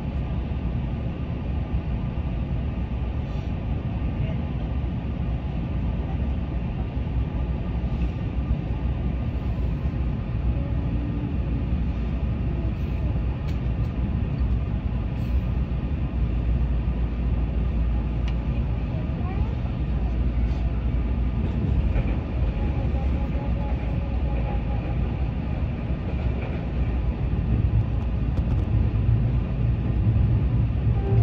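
Steady rumble of a Keihan electric train running, heard from inside the carriage.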